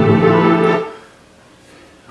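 Recorded ballet music holding a sustained chord that ends about a second in, followed by quiet room tone.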